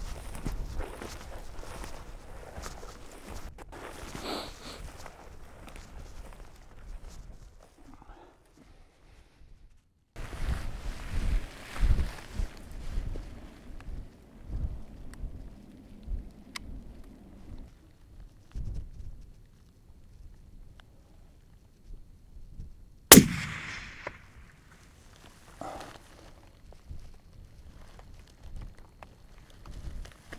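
Wind buffeting the microphone on an open hillside, then, about two-thirds of the way through, a single rifle shot, the loudest sound, its report trailing off briefly.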